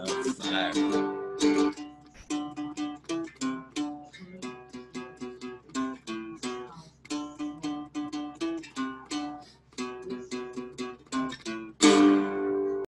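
Three-string cigar box guitar music: a few strummed chords, then a picked single-note melody at about three to four notes a second with short pauses, ending on a loud strummed chord.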